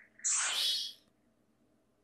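Anime sound effect: a short whoosh, under a second long, rising in pitch as the masked man's swirling space-time warp sucks something in; it cuts off abruptly.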